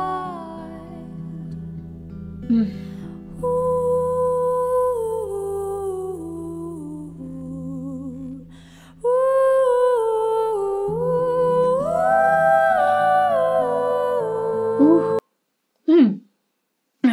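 A female singer's wordless, sustained 'ooh' vocalise gliding slowly between long held notes, with no guitar playing under it. About nine seconds in, a second voice joins in harmony and the singing grows louder; it cuts off suddenly near the end.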